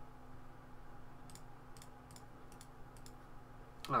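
A run of about half a dozen light clicks at a computer, a second or so in and lasting about a second and a half, over a faint steady electrical hum.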